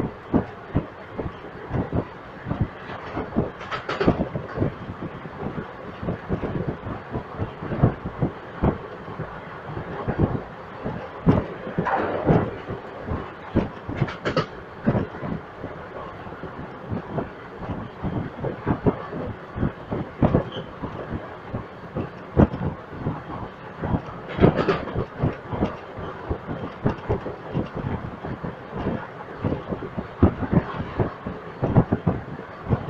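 Wheels of an Indian Railways express train's passenger coaches clattering over rail joints while running at speed, heard from aboard the train: a quick, irregular stream of clacks over a steady rumble, with a few louder bursts of clatter.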